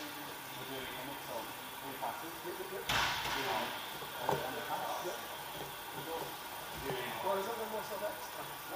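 Indistinct voices of people talking, with one sharp thud about three seconds in and a couple of softer knocks later.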